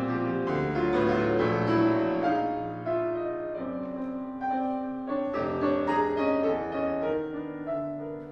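Solo acoustic piano playing contemporary serialist classical music live: dense, overlapping chords and held notes, with several loud attacks.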